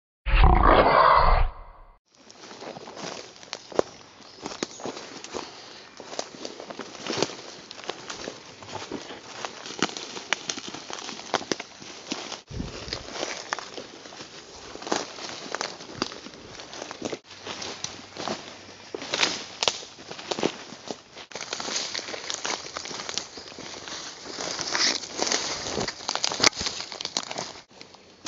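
A short, loud sound effect laid over a zoom transition for about the first second and a half, then footsteps crunching and crackling through dry leaf litter, twigs and undergrowth as people walk through rainforest bush, with irregular snaps and rustles throughout.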